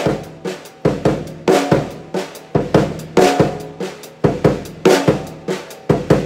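Drum kit playing a linear funk groove in eighth notes grouped three plus five (hi-hat, snare, bass drum, then hi-hat, snare, hi-hat, bass drum, bass drum), one drum at a time, with an accent on beat two. The pattern repeats steadily.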